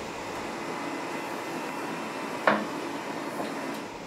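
Steady hum of running lab equipment, with a single sharp metallic click about two and a half seconds in as the latch of a shielded Faraday cage door is worked.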